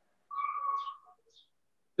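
Dry-erase marker squeaking on a whiteboard as a word is written: one steady high squeak of under a second, then a brief fainter one.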